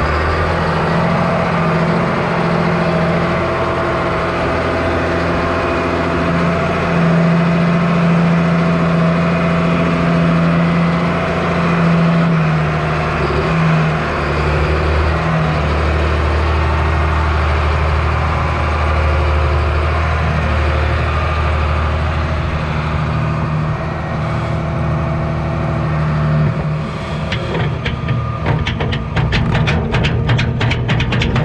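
Farm tractor engine running steadily while working the front-end loader, its pitch shifting a little as it moves and lifts. In the last few seconds there is a rapid rattle of clicks as the bucket tips lime into the spreader.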